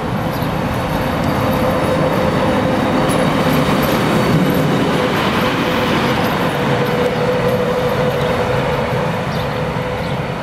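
DB Class 151 six-axle electric locomotive passing close by on the track: the rumble of its wheels on the rails builds to a peak about halfway through, then eases as it moves away. A steady hum runs under it.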